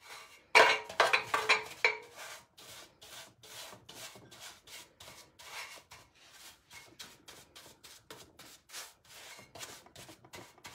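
A paintbrush stroking wet polyurethane over the rim of an old metal milk can: a quick run of soft rubbing swishes, about two to three a second, louder in the first couple of seconds.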